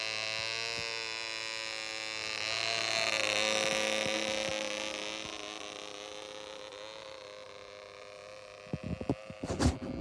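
ED Baby model diesel engine in a Keil Kraft Piper Super Cruiser model plane running flat out with a high, steady buzz. It grows louder about three seconds in as the model flies past, then fades as the plane climbs away. Irregular low thumps and rumbles come in near the end.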